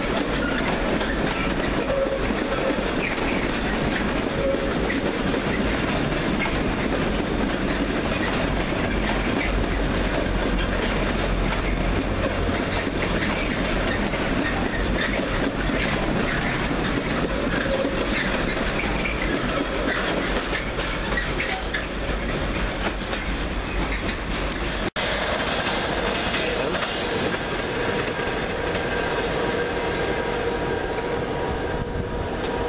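Container wagons of a long intermodal freight train rolling past close by, wheels clattering steadily over the rail joints. About 25 s in it cuts off abruptly to a different, steadier train sound with a held hum.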